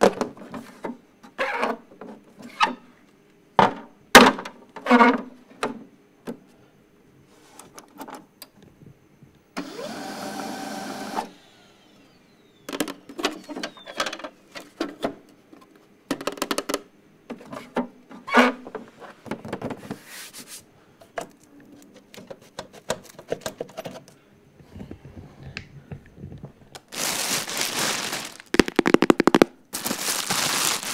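Tapping and handling of a black multifunction printer-scanner's plastic casing, lid and paper tray: a run of sharp taps and clicks, a short scraping noise about ten seconds in, and scattered clicks after. Near the end, a plastic bag crinkles loudly.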